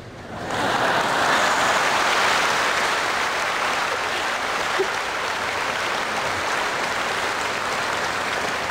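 Audience applause starting about half a second in, swelling quickly and then holding steady.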